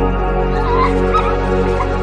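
Slow ambient music with sustained tones. Over it, a puppy whimpers a few times in the second half.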